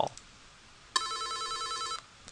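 X-Lite softphone's electronic incoming-call ringtone, a steady ring that starts about a second in and cuts off suddenly. It is the click-to-dial call ringing the user's own phone first, before connecting to the dialled number.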